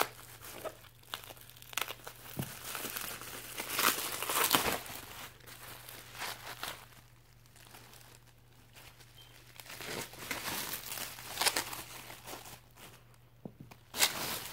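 Plastic bubble wrap crinkling and rustling as it is handled and pulled open, in irregular bursts, loudest about four seconds in and again around ten to twelve seconds.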